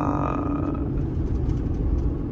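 Road noise inside a moving car: a steady low rumble of tyres and engine while driving, with a brief higher hum that fades out about a second in.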